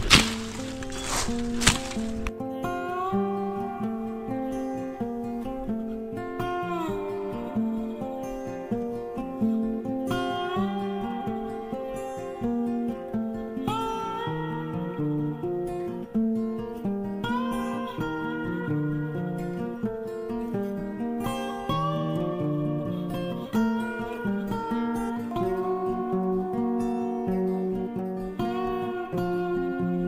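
A few sharp strikes, a tool biting into the ground, in the first two seconds. Then steady acoustic guitar music of plucked notes with sliding bends.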